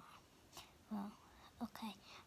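A young girl's voice, speaking or whispering softly in a few short bits.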